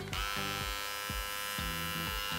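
Philips Multigroom MG7715 13-in-1 trimmer, fitted with its small precision detail-trimmer head, switched on and buzzing steadily.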